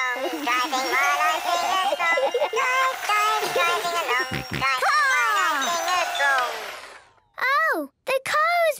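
Battery-powered toy car playing its electronic tune, which slows, drops in pitch and dies away about seven seconds in as its batteries run flat. A small child's wailing cry follows at the very end.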